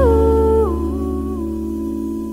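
Jazz ballad ending: a woman's voice hums a short descending phrase in three steps, then holds a long note over a sustained chord as the music slowly fades.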